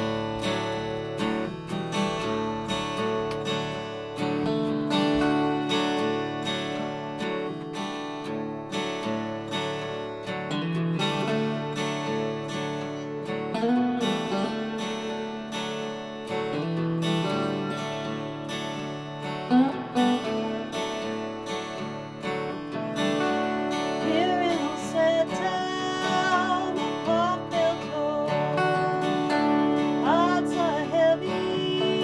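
A live band with electric and acoustic guitars playing a slow blues number together, steadily strummed and picked. Gliding pitches enter in the last few seconds.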